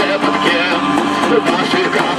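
Live band playing with accordion, electric guitar and hand drums: a wavering melody line over regular drum strokes.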